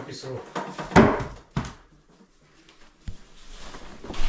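A few sharp knocks and clunks of a chainsaw that is not running, being lifted and turned in the hands: two close together about a second in, then a smaller one near three seconds.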